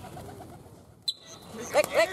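A player's rapid, high-pitched vocal calls to the racing pigeons, a quick string of rising-and-falling yelps about five a second, starting near the end after a quiet stretch. A single sharp click comes about a second in.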